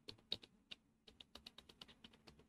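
Faint typing on a computer keyboard: about a dozen quick, irregularly spaced key clicks.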